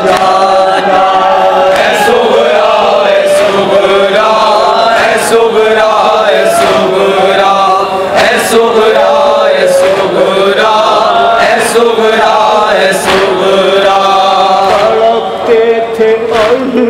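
A Shia noha lament chanted by male voices, with a crowd beating their chests in unison (matam): a sharp slap about every second and a half beneath the chanting.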